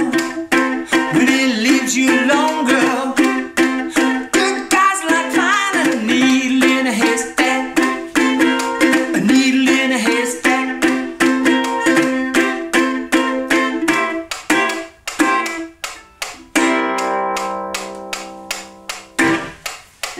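Ukulele strummed in chords with a man's voice singing along: the close of a song. The strumming thins out about two-thirds of the way in, then a final chord rings and dies away just before the end.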